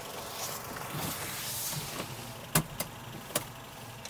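A few short clicks from the ignition key being turned in the Nissan S15 Silvia, over a faint hiss, with no starter motor, engine or chime in reply: the car is dead, which turns out to be a poor battery connection.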